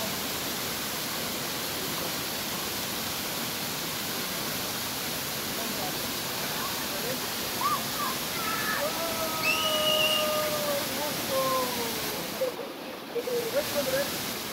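Waterfall rushing steadily over rocks into a pool. From about eight seconds in, a voice calls out over it in a few long held tones.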